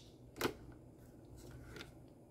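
A single sharp click about half a second in, then faint rustle and a smaller click near the end, from a plastic-bodied flat iron being handled in the hands.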